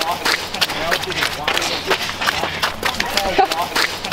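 Footsteps in sneakers on packed, icy snow: a quick, irregular run of short, sharp steps.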